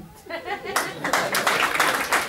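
A roomful of people clapping in applause, starting under a second in and carrying on steadily after a few faint spoken words.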